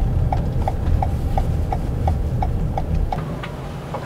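Car turn-signal indicator ticking evenly, about three ticks a second, while signalling a right turn off the freeway, over low road and engine rumble inside the cabin; the ticking stops about three seconds in.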